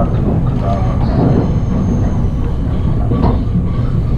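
Running noise of a Resort Shirakami HB-E300 series hybrid diesel railcar heard from inside the passenger cabin: a steady low rumble while the train is moving.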